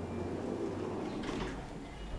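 Automatic sliding doors of a Sabiem traction lift running with a low rumble, with a short clatter a little over a second in.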